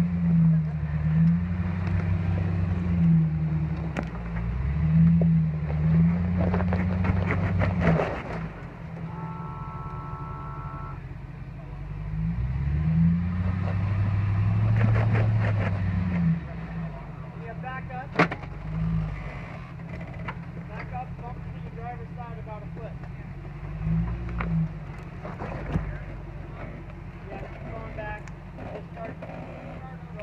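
Jeep Grand Cherokee engine revving in repeated surges under load as the lifted SUV crawls over rocks, rising and falling, with a second long push about twelve seconds in; after that it drops back to a lower steady run while people talk.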